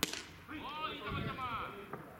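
A single sharp crack of a pitched baseball smacking into the catcher's mitt, followed by players shouting calls across the field.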